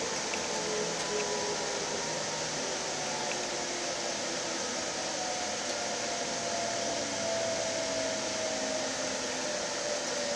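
Steady running noise inside a Link light rail car as the train travels, with faint whining tones that drift slowly upward.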